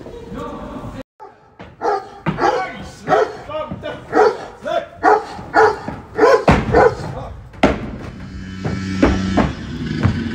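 Sound of a musical's stage performance carrying into the wings: a run of short, loud, pitched vocal calls about two a second, then a held musical chord near the end. The sound cuts out sharply about a second in before the calls begin.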